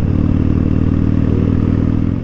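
Harley-Davidson Dyna Fat Bob's air-cooled Twin Cam 103 V-twin running at a steady cruising speed, heard from the rider's seat.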